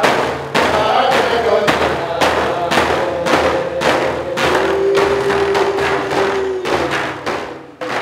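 Drum song on a hide frame drum: steady beats at about two a second, with a long held note over them.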